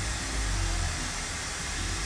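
Steady low hum with an even hiss of background noise, and no distinct event.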